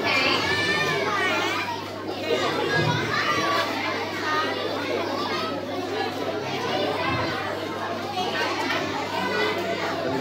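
Crowd of children and young people chattering and calling out all at once, many voices overlapping without a break.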